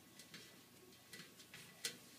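Faint, light clicks and taps of paintbrushes against paper and a paper-plate palette, about five in all, the loudest near the end, over near silence.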